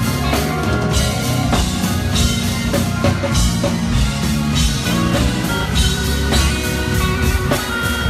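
Live band playing: a drum kit keeping a steady beat under electric guitar.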